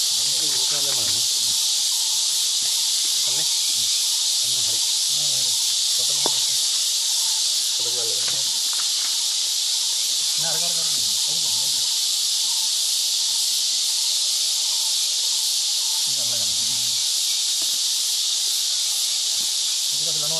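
Steady, high-pitched drone of an insect chorus, unbroken throughout, with a few brief low murmurs of men's voices underneath.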